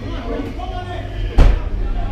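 Hockey players talking and calling out over each other in a locker room, over a steady low hum, with one sharp loud thump about one and a half seconds in.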